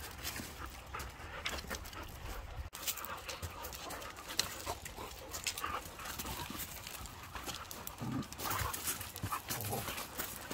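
Several dogs playing and wrestling on gravel: scuffling with many short clicks and scrapes, a little louder with low bursts near the end.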